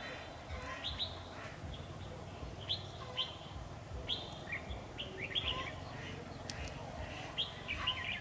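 Red-whiskered bulbuls calling: short, sharp, upward-flicking chirps, a dozen or so scattered irregularly, over a low steady rumble.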